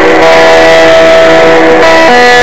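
Electric guitar played loud, one note ringing for about a second and a half over a held chord before the notes change near the end.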